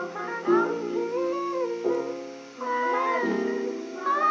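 A Vietnamese R&B song playing in a mellow, jazz-like passage of sustained chords and gliding melody lines, dipping briefly in loudness about halfway through.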